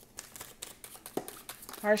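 Tarot deck being shuffled by hand: a quick, irregular run of soft clicks and flicks from the card edges.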